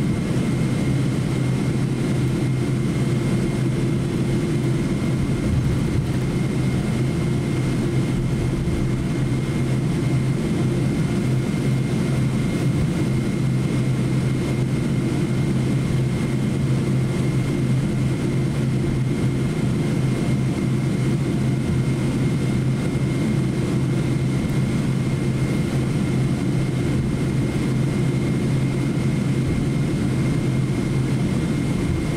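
Boeing 777-200 cabin noise while taxiing, heard from inside the cabin: the jet engines at taxi power make a steady low hum with a thin, constant high whine over it. A slightly higher hum fades out right at the start.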